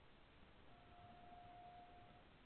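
Near silence: low background hiss, with a faint steady tone that begins under a second in and holds.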